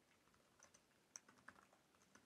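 A few faint, scattered computer keyboard keystrokes, with near silence between them.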